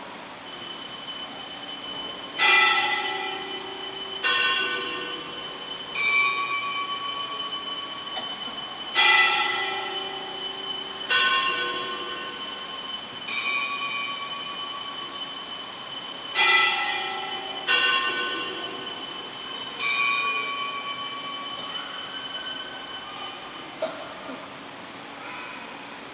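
Altar bells ringing for the elevation of the chalice at the consecration of the Mass: a steady high ringing goes on throughout, while a larger bell is struck about nine times, roughly every two seconds, each stroke ringing out and fading.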